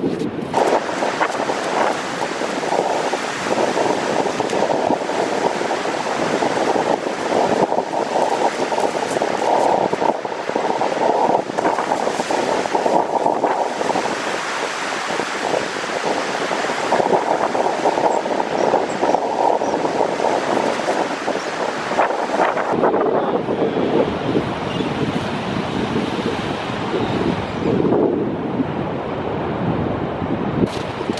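Ocean surf breaking on a beach, with wind buffeting the microphone: a steady rushing noise. About three quarters of the way through, the high hiss drops away and the sound turns duller.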